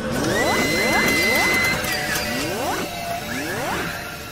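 Electronic intro music with synthetic sound effects: a held high tone through the first half and a series of quick rising sweeps.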